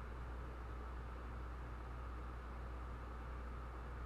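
Quiet room tone: a steady low electrical hum under a faint even hiss, with no distinct sounds.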